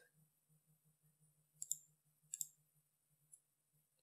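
A few soft computer mouse clicks in near silence: two quick pairs of clicks in the middle and a single faint click near the end.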